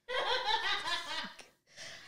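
A woman laughing for about a second and a half, with a short, quieter bit of laughter near the end.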